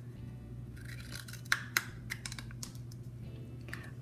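Small pointed scissors snipping through a paper drinking cup, a few short, sharp snips in the middle as a little triangle is cut out.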